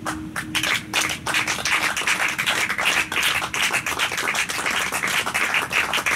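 Small audience applauding, the claps starting just after the beginning and growing dense. The last acoustic guitar and dobro chord dies away under the first claps.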